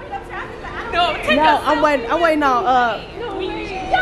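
People's voices chattering, unclear and overlapping, with no other sound standing out.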